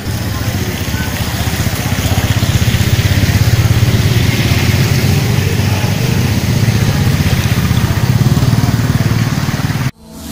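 Motorcycle engine running steadily close by, swelling over the first couple of seconds and then holding. It cuts off suddenly just before the end.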